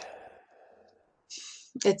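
A person sighs, a breathy exhale that fades away over about a second. A short hiss follows, and then speech begins near the end.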